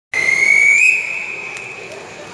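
A single high whistle-like signal tone at the start of a swimming race, held for about a second and lifting slightly in pitch as it ends, then dying away in the pool hall's echo.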